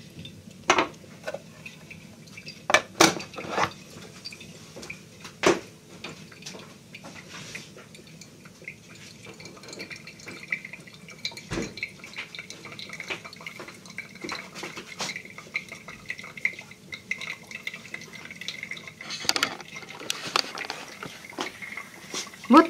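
A few sharp clinks and knocks of a kitchen knife being handled and set down on a stone countertop in the first few seconds. Then a small espresso-type coffee maker brews with a faint, steady hiss and trickle as the coffee finishes.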